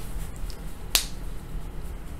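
A single sharp click about a second in, over a low steady room hum.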